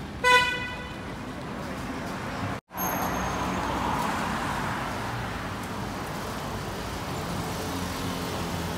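A short horn toot just after the start. Then a car drives past on the road, its tyre and engine noise swelling and slowly fading.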